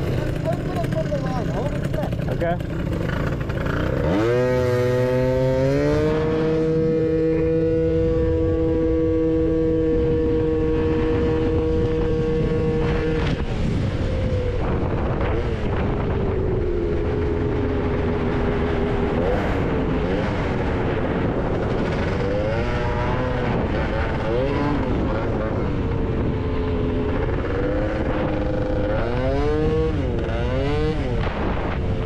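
Gilera Runner 180 two-stroke scooter engine under way: it revs up about four seconds in as the scooter pulls away, holds one steady pitch for several seconds, then rises and falls with the throttle and climbs again near the end, over a constant rush of riding noise.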